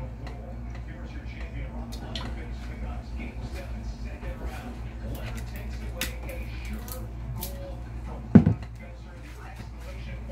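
Cooking oil heating in a hot nonstick pan on an electric coil burner, with scattered small ticks and pops. A single loud thump comes a little past eight seconds in, over a steady low hum.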